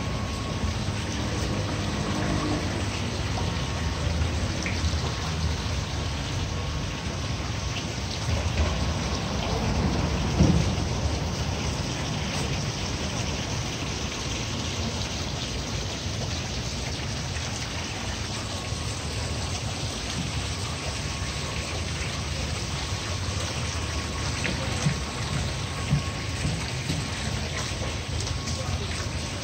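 Steady, fairly loud outdoor noise, a low rumble under a hiss, like wind on a handheld microphone, swelling into a brief louder bump about ten seconds in.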